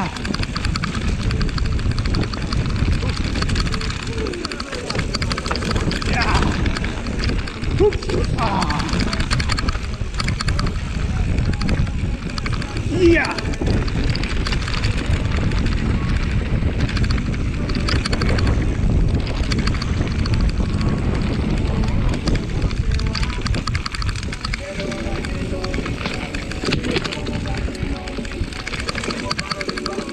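Mountain bike running fast downhill on a dirt trail: a steady rush of wind buffeting the microphone over the knobby tyres rolling on hardpack and the bike rattling over bumps.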